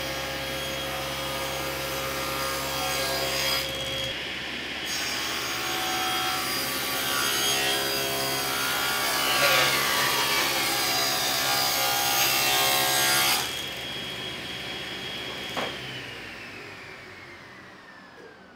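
Table saw ripping along the edge of a cedar board, about thirteen seconds of cutting over the motor's steady hum. The cut then ends, the saw is switched off with a click, and the blade winds down in a falling whine.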